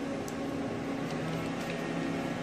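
Steady low machine hum from a CT scanner and its room equipment, with a few faint ticks.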